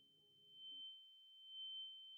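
Near silence with a faint, steady high-pitched tone that swells slightly in the second half; faint low background music dies away about a second in.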